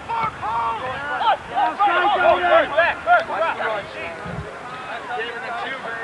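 Several voices shouting and calling out over one another from the sideline of a soccer match, indistinct. The shouting is busiest in the first three seconds or so and thins out after that.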